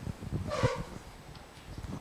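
Rustling handling noise with soft low thumps, and one short, louder noise about half a second in.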